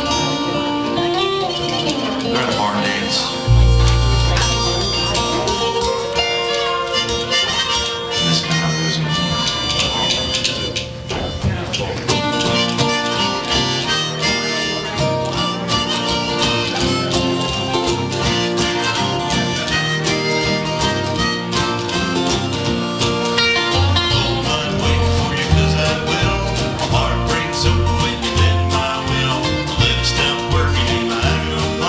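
Live folk string band playing an instrumental passage on acoustic guitars, upright bass and drums, with a harmonica lead. A deep bass note sounds about three and a half seconds in, and a pulsing bass line comes in near the end.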